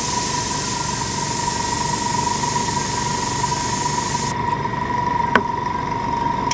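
Airbrush spraying: a steady hiss of air and paint that stops suddenly about four seconds in. Underneath, a Sparmax Power X airbrush compressor runs with a steady low hum and a thin, steady high whine. One sharp click comes shortly after the spray stops.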